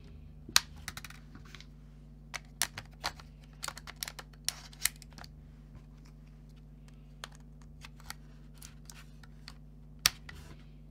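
Sharp, irregular plastic clicks and taps from a Canon EOS M50 mirrorless camera body being handled, its battery and memory-card compartment door flipped open and snapped shut. The clicks come thickest in the first five seconds, the loudest about half a second in, then thin out.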